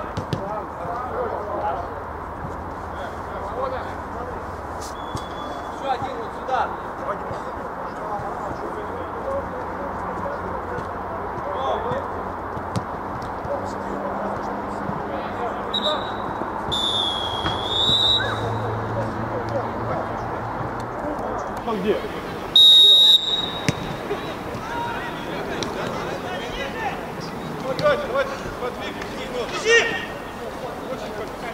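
Indistinct shouts of players on an amateur football pitch, with occasional knocks of the ball being kicked. A high whistle note sounds about 17 s in, and a louder, short whistle blast about 23 s in.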